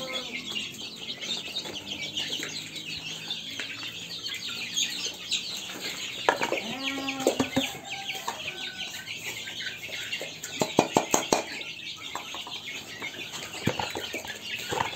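Free-range native chickens clucking and calling among many short high chirps, with one louder drawn-out call about six seconds in. A quick run of sharp clicks follows near eleven seconds.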